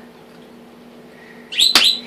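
A short, high-pitched chirping squeak with a sharp click in the middle of it, about a second and a half in, over a faint steady hum.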